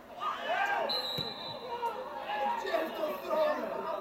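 Footballers shouting to each other on the pitch. A single steady blast of a referee's whistle lasts about a second, starting about a second in, and a kicked ball thuds.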